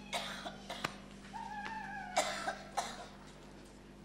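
A person coughing in several harsh bursts, the loudest two about half a second apart midway, with a drawn-out high tone just before them.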